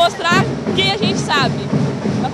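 A young woman speaking in short phrases, with a marching band playing steadily in the background.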